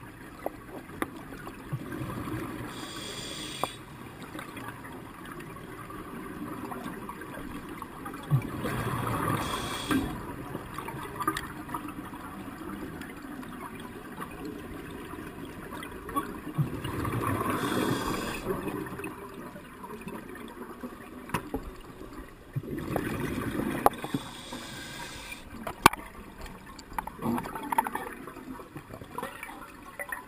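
Scuba diver breathing through a regulator, heard through an underwater camera housing: bursts of exhaled bubbles gurgling out about every six to eight seconds, with hissing inhalations and scattered small clicks and knocks between.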